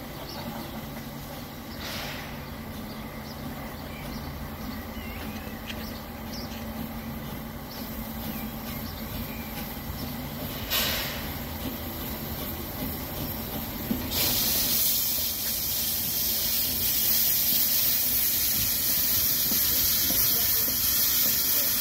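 Narrow-gauge steam locomotive 99 4801 drawing slowly closer with a low rumble; a short hiss of steam comes about eleven seconds in, and from about fourteen seconds a loud, steady hiss of steam venting at the cylinders as it passes.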